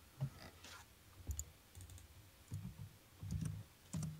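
Faint, irregular clicking from a computer keyboard, with a few soft low knocks in between.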